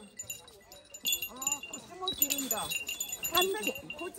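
Small bear bells jingling with high, tinkling rings that come and go from about a second in, with people's voices mixed in.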